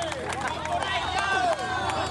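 A street crowd talking and calling out at once, with several voices overlapping.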